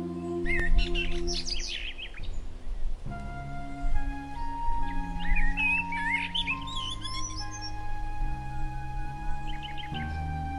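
Ambient music of slow, sustained chords, layered with recorded birdsong. Bursts of bird chirps and tweets come in the first two seconds and again from about four to seven and a half seconds in.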